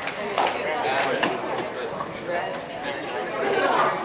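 Several people chattering at once, voices overlapping with no single speaker standing out.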